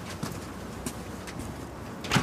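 Outdoor street background with birds calling, and a few short sharp footfalls.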